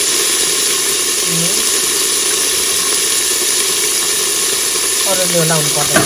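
Whole mung beans, peas and other pulses sizzling steadily in hot oil in a pressure cooker pot.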